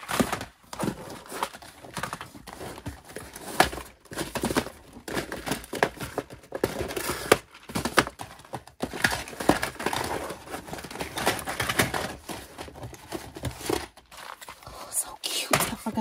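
Small cardboard press-on nail boxes being shuffled, slid and packed into a drawer: irregular light knocks and clatter of the boxes with packaging rustle between them.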